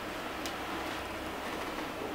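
Steady background hiss with a faint low hum, and one light click about half a second in.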